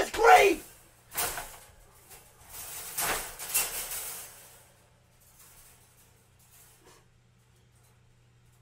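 A man's voice laughing and shrieking in loud bursts over the first few seconds, dying down to faint sounds after about five seconds.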